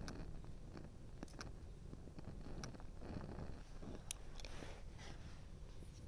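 Soft puffing and lip smacks on a tobacco pipe being relit with a lighter, among scattered faint clicks and pops, the sharpest about four seconds in.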